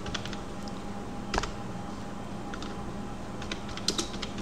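Scattered clicks of a computer mouse and keyboard, one at a time, with a louder click about a second and a half in and another just before the end, over a faint steady electrical hum.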